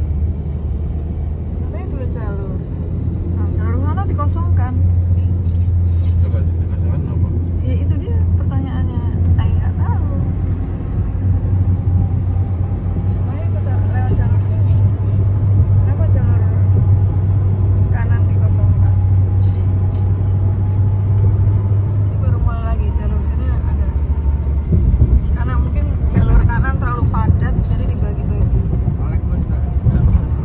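Steady low road rumble heard inside a car's cabin while it cruises on a highway: tyre and engine noise that changes character slightly about two-thirds of the way through.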